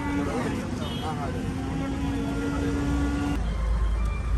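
Busy street ambience heard from inside a stopped car: background voices and traffic. A steady low tone holds for about three seconds and cuts off suddenly, after which a low rumble grows louder.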